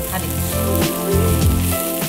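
Oil sizzling steadily in a frying pan as chopped gongura (sorrel) leaves and soya chunks are stirred with a wooden spatula.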